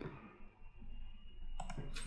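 Faint computer clicks, a short cluster near the end, over a low steady room hum.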